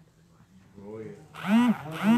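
A man speaking into a microphone through a church PA system. It is nearly quiet at first, and the voice picks up about a second in and is loudest near the end.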